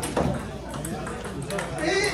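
Table tennis ball clicking off paddles and the table a few times in a rally, over voices in the room.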